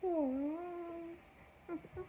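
Yellow Labrador retriever giving one drawn-out whine, dipping in pitch then rising and holding for about a second, followed by a brief shorter whimper near the end.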